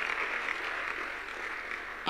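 A large congregation clapping: a steady, dense din of many hands, fading slightly toward the end.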